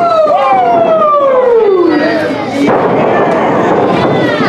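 A single voice giving a long, drawn-out yell that slides steadily down in pitch for about two seconds, followed by general crowd noise in the hall.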